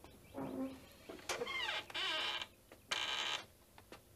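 Bird calls: a run of falling chirps, then two short buzzy trills of about half a second each, the second a moment after the first.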